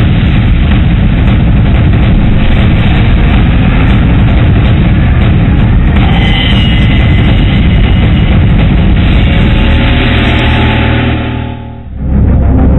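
Loud, dense rumbling whoosh from a TV news programme's animated title sequence, with a little music underneath. It dies away just before the end.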